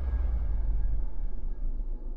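Deep, low rumble of a cinematic logo-intro sound effect, its upper hiss slowly dying away.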